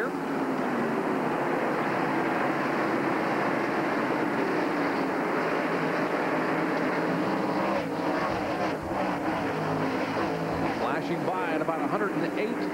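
A pack of NASCAR stock cars racing at speed, their V8 engines running together as a dense, steady drone.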